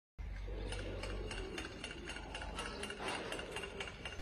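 Faint outdoor background noise: a low rumble with light, regular ticks about four a second.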